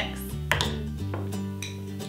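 Kitchenware handled at a blender: a sharp click about half a second in and a lighter knock about a second in, over steady background music.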